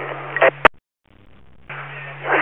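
Two-way radio traffic on a scanner: a transmission ends with a sharp squelch click about half a second in, and the channel goes dead for a moment. About a second later an open carrier comes up with steady hiss and a low hum, ahead of the next call.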